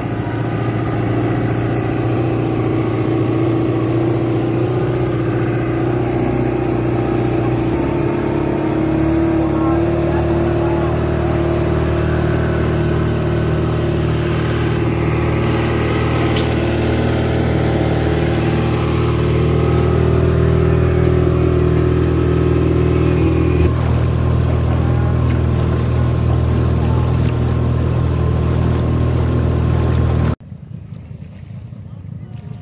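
Tour boat's engine running steadily under way, with water rushing along the hull; its note shifts slightly about eight seconds in.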